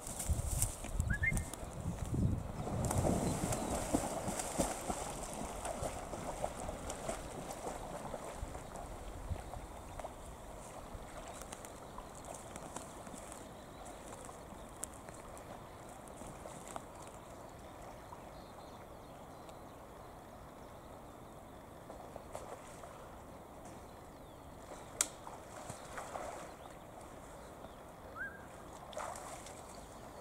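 German shorthaired pointer splashing through river water as it swims out to retrieve a shot nutria. The splashing is loudest in the first few seconds and then fades to a faint wash of water, with a single sharp click about 25 seconds in.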